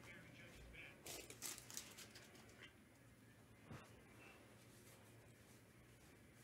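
Near silence, with faint rustling and handling noises about one to two seconds in and a single faint one near the middle.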